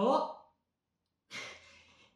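A single spoken word, a pause, then a short breathy sigh from a person that fades over about half a second.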